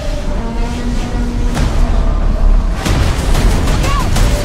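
Film-trailer sound mix of a tornado: a loud, dense rushing wind-and-debris rumble with a deep low end, under held music tones. Sharp booming hits land about a second and a half in and again near three seconds.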